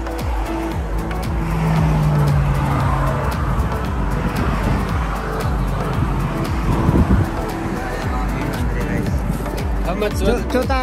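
Steady vehicle and road-traffic noise, with indistinct voices and music mixed in.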